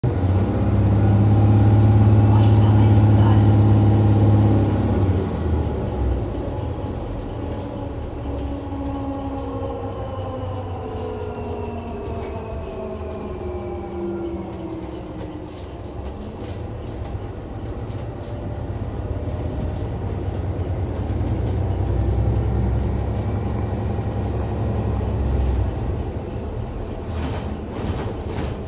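Interior of an Iveco Urbanway 12 Hybrid city bus on the move. A strong low drone for the first few seconds gives way to the hybrid drive's whine falling steadily in pitch for about ten seconds, then the running noise swells again. A few clicks come near the end.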